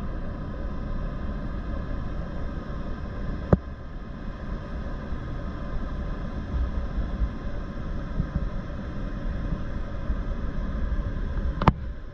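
Caterpillar C15 diesel of a boom truck running steadily to drive the crane's hydraulics as the boom swings and lowers, under a low, gusty rumble of wind on the microphone. A sharp click about three and a half seconds in, and another just before the end.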